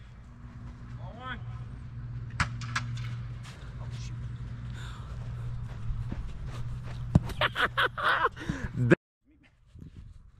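Steady low hum of a JUGS football-throwing machine's spinning wheels, with a sharp thump about two and a half seconds in as a football is fired. Distant shouting and laughter come near the end, then the sound cuts out abruptly.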